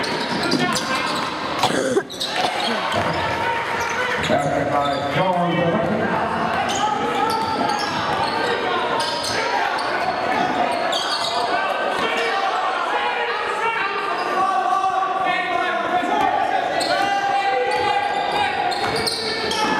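A basketball bouncing on a hardwood gym floor during play, with many voices of players and spectators echoing in a large gym. There is one sharp knock about two seconds in.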